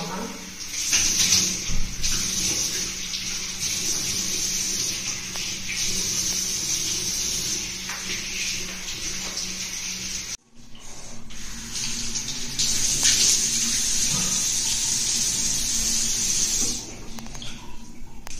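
Water running from a bathroom sink tap while hands cup it to rinse a face mask off the face. The flow is steady and breaks off briefly a little past halfway.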